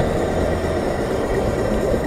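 A car on the move, heard from inside the cabin: a steady low drone of engine and road noise.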